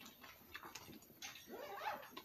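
A quiet room with faint small clicks and rustles, then a short rising vocal sound near the end, like someone's questioning "hmm?"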